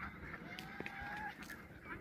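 Faint calls from a farmyard flock of domestic geese and ducks, with one drawn-out call held for most of a second in the middle.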